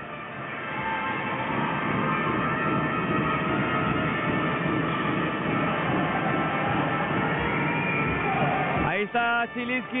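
Basketball arena crowd noise with music in it, building during the first second, holding steady, then cutting off abruptly about nine seconds in.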